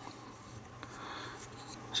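Faint rustling and rubbing of fingers handling a small die-cast model shuttlecraft as it is turned over, with a light tick a little under a second in.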